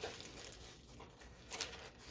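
Faint rustling of diamond painting kit packaging being handled, with one brief, slightly louder rustle about one and a half seconds in.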